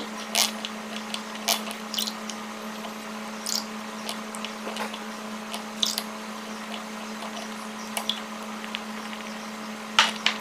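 A metal fork stirring thick cornstarch-and-water oobleck in a glass bowl, giving short, irregular scrapes and clicks against the glass as fresh cornstarch is worked in. A steady low hum runs underneath.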